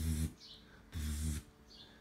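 A man's voice: two short spoken bursts with hissing consonants, about a second apart.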